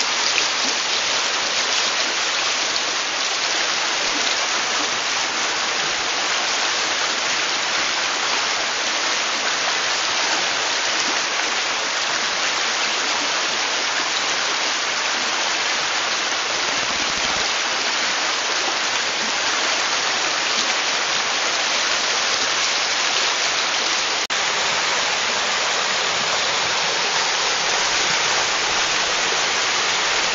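Mountain stream rushing over rocks and small rapids: a steady, loud rush of water, broken once by a brief click about two-thirds of the way through.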